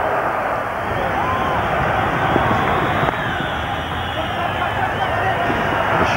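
Cricket stadium crowd: a steady din of many voices.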